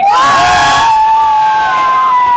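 Riders on a swinging boat fairground ride yelling together as the boat swings: a burst of shouts and screams in the first second, with one long held cry carrying on through the rest.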